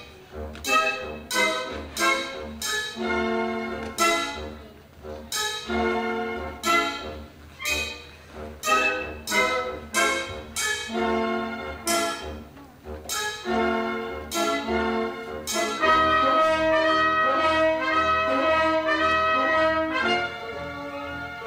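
Orchestral ballet music: the orchestra plays a run of short, accented chords with brief gaps between them. Near the end it moves into a loud, long-held chord.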